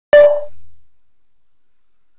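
A single loud knock with a short ringing tone that dies away within half a second, from a clear enclosure being bumped by hand.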